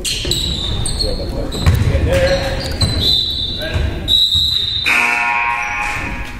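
Basketball game sounds in an echoing gym: a ball bouncing on the hardwood floor and sneakers squeaking in short high squeals, with a longer squeal near the end.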